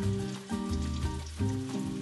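Garlic and oyster mushrooms sizzling gently in olive oil over low heat, under soft background music with sustained low notes.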